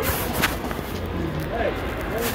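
Indistinct background chatter of voices, with a single sharp knock about half a second in as the phone is handled and jostled.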